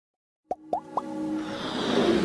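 Logo-intro sound effects: three quick rising pops about a quarter second apart, then a swelling music build that grows steadily louder.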